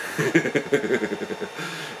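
A man laughing: a run of quick chuckling pulses that tails off into breath about a second and a half in.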